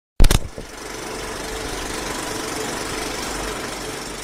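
Film projector sound effect: a loud clack just after the start, then the projector's steady, rapid mechanical clatter with a faint hum.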